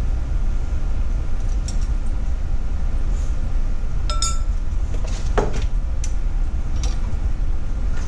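A few light clinks of kitchenware, a metal measuring spoon and a clear canister lid against glass, as sugar is measured into a glass mixing bowl; one clink about four seconds in rings briefly. A steady low hum runs underneath.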